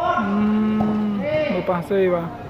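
A voice holds one long, steady-pitched call for about a second, then breaks into talk.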